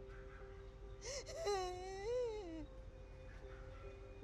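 A woman crying: one drawn-out wail about a second in that rises and then falls, over soft, steady background music.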